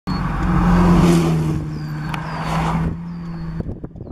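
A motor vehicle's engine and road noise, loud with a steady low hum, dying away about three seconds in.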